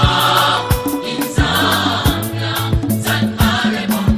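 A song with several voices singing together in a gospel style over a steady drum beat and bass line.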